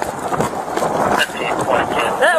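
Body-worn camera picking up handling and movement noise: uneven rustling with short scuffs and knocks, likely mixed with indistinct voice.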